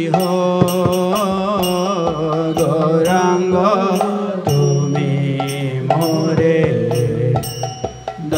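A man singing a Bengali Vaishnava kirtan in long, drawn-out melodic phrases, accompanied by strokes on a mridanga (khol) drum.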